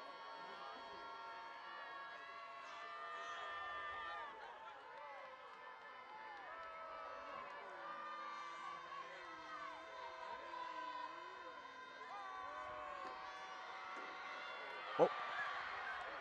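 Faint stadium crowd noise: many voices calling and cheering, mixed with a marching band's horns playing in the stands. A single sharp knock sounds near the end.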